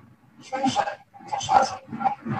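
Speech: a woman speaking Bengali, in two short phrases.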